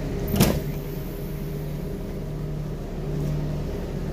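ÖBB class 5047 diesel railcar's engine running with a steady low hum. One sharp knock sounds about half a second in.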